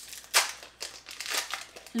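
Foil wrapper of a Pokémon trading card booster pack crinkling and tearing as it is pulled open by hand: a handful of short crackles, the loudest about a third of a second in.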